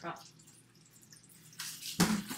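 Water from a kitchen tap starts running into the sink about three-quarters of the way in, a steady hiss, over a faint low hum.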